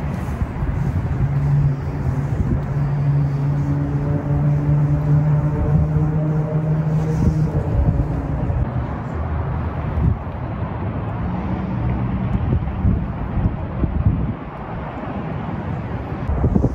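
City traffic noise with some wind on the microphone, and a vehicle engine hum holding one steady low pitch for about six seconds, starting a second or two in and then fading.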